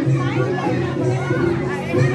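Music playing with a steady low note, with voices of adults and a young child talking over it.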